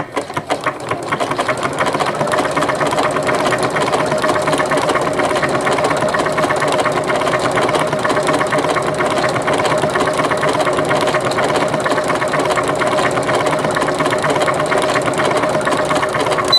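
Janome MC9000 computerized sewing machine sewing steadily at speed, a fast even run of needle strokes over a steady motor hum. It is sewing a wide Greek key decorative stitch with a satin-stitch foot.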